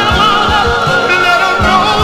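A 1981 soul-gospel record playing: a wavering, wordless high vocal line held over the full band, with a steady beat.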